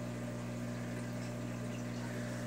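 Steady low hum of running aquarium equipment, with faint water noise from the bubbling tank.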